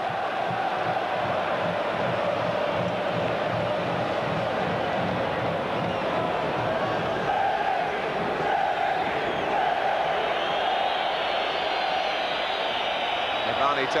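Large football stadium crowd making a steady din of many voices, with chanting running through it.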